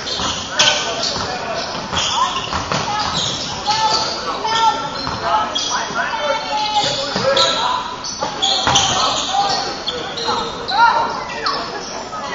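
Basketball being dribbled and bouncing on a hardwood gym floor, with repeated short sneaker squeaks as players cut and stop, ringing in a large gym. Players' voices call out indistinctly throughout.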